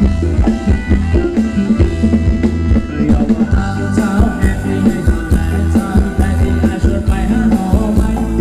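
Live band playing Thai ramwong dance music, loud through a PA, with a steady drum and bass beat; a melody line comes in about three and a half seconds in.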